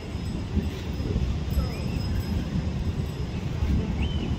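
Busy outdoor ambience: a steady low rumble with faint, indistinct voices in the background.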